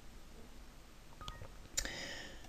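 A faint computer alert chime, a short stack of electronic tones fading over about half a second, sounds near the end with a soft click just before it. It is a Windows system sound played as an information message box pops up.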